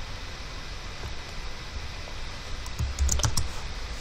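A few keystrokes on a computer keyboard about three seconds in, over a faint steady room hiss.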